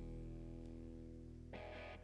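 Quiet background music: a sustained guitar chord rings and slowly fades, and a new chord is struck about one and a half seconds in.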